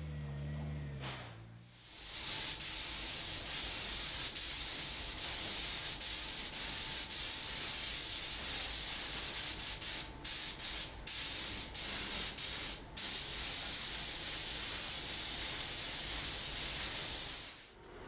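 A forklift engine runs briefly and fades out. Then a compressed-air paint spray gun hisses steadily as it coats a car bodyshell, broken by a few short pauses about two thirds of the way through as the trigger is released.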